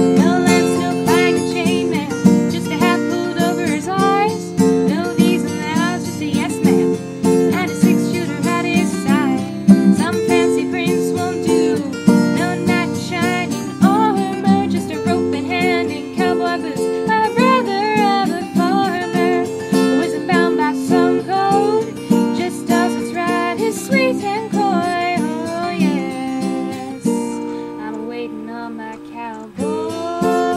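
Instrumental break of a country song: acoustic guitar strumming steady chords under a lead melody line, thinning out to held chords near the end.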